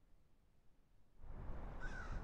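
Near silence, then from about a second in, outdoor background noise with a low rumble, and a short bird call near the end.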